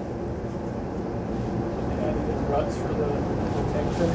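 Steady low room hum, with a faint, indistinct voice from an audience member about two seconds in.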